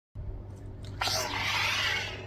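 Xenopixel lightsaber's speaker playing its Tusken Slayer sound font: a steady low electric hum, joined about a second in by a louder rushing hiss.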